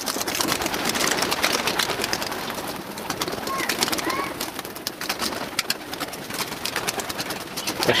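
A flock of pigeons flapping their wings as they come in and land on a pole-mounted landing rack: a dense, irregular run of sharp wing claps over a rustling haze. Two faint short chirps come about halfway through.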